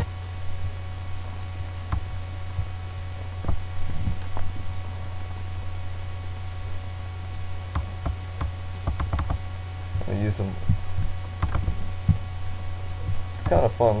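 Steady low electrical mains hum in the recording, with a few faint scattered clicks and a brief mumble of speech near the end.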